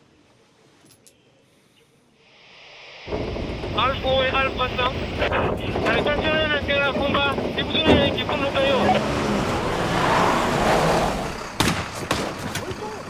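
Near silence, then a rising hiss of radio static and, about three seconds in, the sudden steady noise of a truck under way. A voice comes over a two-way radio, thin as through a handset, and a few sharp cracks follow near the end.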